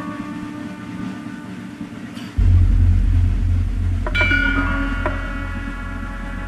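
Javanese gamelan playing. About two and a half seconds in a large hanging gong (gong ageng) is struck, its deep tone pulsing as it rings on. A second later more bronze instruments are struck, giving a bright bell-like ring.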